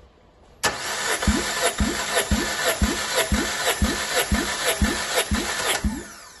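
Mitsubishi 4A92 1.6-litre four-cylinder engine cranking on its starter without firing, for a cold compression test on the fourth cylinder. It starts about half a second in, with a steady starter whine and a compression thump about twice a second, and stops just before the end. The gauge reads 14 kg/cm², a healthy cylinder.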